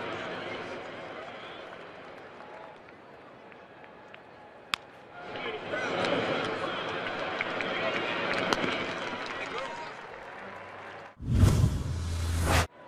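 Ballpark crowd murmur with a sharp crack of a bat hitting a baseball about five seconds in, after which the crowd noise rises while the ball is in play. Near the end, a loud whooshing transition sound effect cuts off suddenly.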